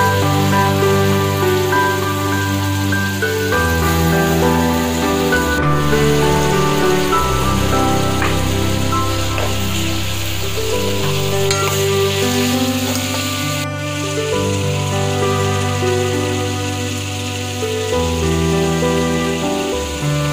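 Soft background music of slow sustained chords changing every couple of seconds, over a steady sizzle of chopped onions and green chillies frying in oil in a pot.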